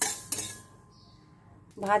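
Steel spatula scraping and clinking against a steel karai as nigella and fenugreek seeds are dry-roasted, with two sharp clinks in the first half second.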